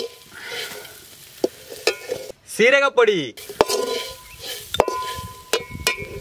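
Quail masala sizzling in a pan as it is stirred with a spatula, with a few sharp clicks and scrapes against the pan. About halfway through, a drawn-out pitched call that rises and then falls sounds over the frying.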